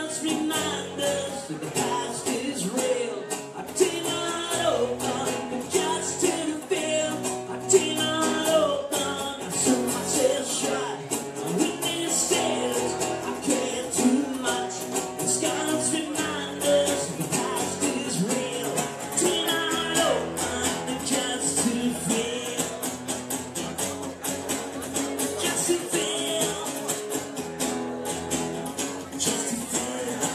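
Live band music playing steadily, with no break.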